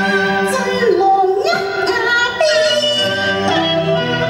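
A woman singing a Cantonese opera song, her voice gliding between long held, ornamented notes over instrumental accompaniment.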